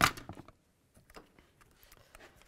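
Plastic interior mirror trim cover on a Chevrolet Silverado door snapping free of its clips as it is pried off: one sharp snap, then a few faint small clicks.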